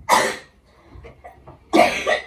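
A person coughing: one short cough at the start and another near the end.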